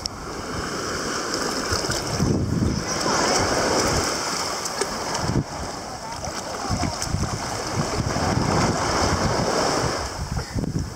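Small waves lapping and washing up the sand in shallow water, with wind buffeting the microphone.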